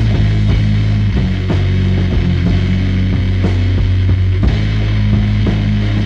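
Heavy, slow punk rock song recorded on a rough four-track cassette demo. Bass guitar plays held low notes, with a drum hit about twice a second and guitar over the top.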